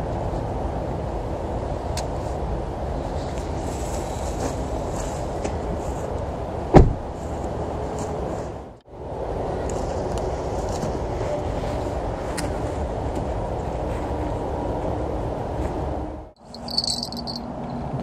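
A steady low rumble of outdoor background noise, with one sharp thump about seven seconds in. Near the end, crickets chirp.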